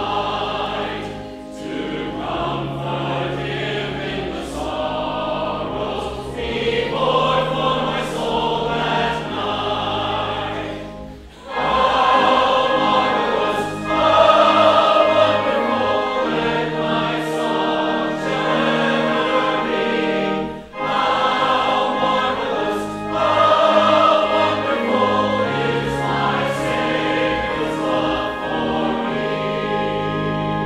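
Choir and congregation singing a hymn over sustained low organ notes, with short breaks between lines. The singing swells louder about twelve seconds in.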